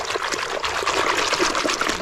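Water sloshing and splashing steadily in a plastic tub as a plastic toy is swished rapidly back and forth through it by hand, with a constant fizzy crackle of small splashes.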